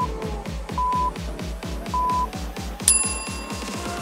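Interval timer countdown: three short, even beeps about a second apart, then a brighter, longer beep near the 3-second mark signalling the start of the next work interval, over electronic dance music with a steady beat.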